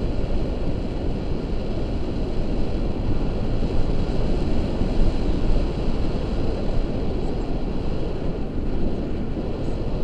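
Wind buffeting the microphone of an action camera carried through the air by a tandem paraglider in flight: a steady, deep rushing rumble that flutters constantly.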